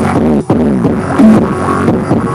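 Music played loudly through a home loudspeaker, bass-heavy with pitched synth-like notes, dipping briefly about half a second in.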